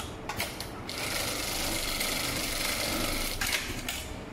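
HighTex MLK500-2516N automatic pattern sewing machine running at speed for about two and a half seconds, stitching through layered polyester webbing, with a few sharp clicks just before and just after the run.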